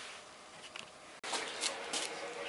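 Quiet workshop room tone with a few faint handling sounds. About a second in, the background hiss steps up and a faint steady hum comes in.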